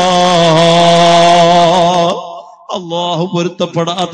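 A man chanting Arabic in a melodic recitation, holding one long, slightly wavering note for about two seconds. After a brief pause, the chant goes on in shorter phrases.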